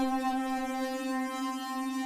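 Alchemy software synthesizer lead holding one plain, steady note rich in overtones. This is the dry starting sound, with no chord trigger, arpeggiator or note repeater in play.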